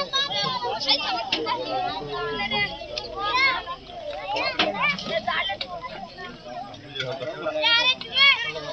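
Many children's voices talking and calling out over one another, with a few sharp clicks among them.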